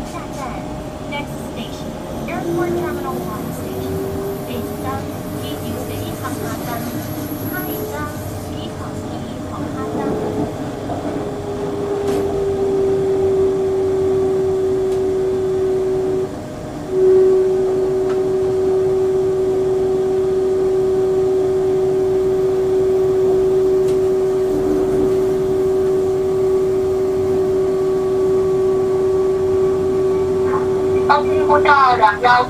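Airport metro express train running on its line, its electric traction drive whining over the rumble of the wheels on the rails. The whine rises in pitch over the first few seconds as the train picks up speed, then holds steady, cutting out briefly about halfway through before resuming.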